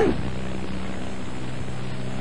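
Steady low hum with hiss on a telephone line, even throughout, with several low droning tones under it.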